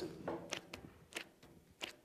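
Coarse 36-grit sandpaper rubbed over partly cured body filler in about four short strokes, making a soft, dull "smucking" sound: the filler is still gummy and not yet ready to sand, rather than powdering.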